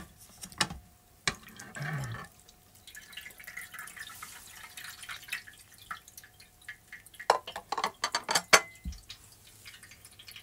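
White ceramic plates, used as water-filled weights, clink and knock as they are lifted off a cloth-covered aluminium pot, with water dripping and trickling. A run of sharp clatters comes near the end.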